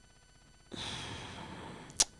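A man sighing into a close microphone: one breathy exhale of about a second that starts under a second in, ending in a short sharp click.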